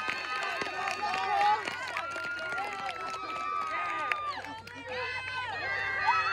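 Several people talking over one another in a group, a babble of voices with no clear words.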